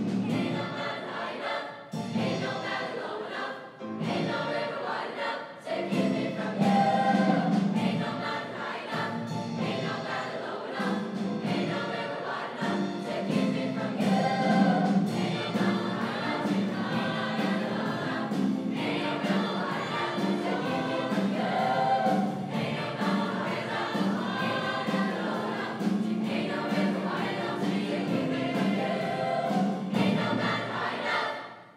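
Large mixed high school choir singing in harmony, holding sustained chords that change every second or so.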